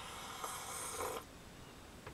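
A man slurping a sip from a mug: one noisy draw lasting about a second.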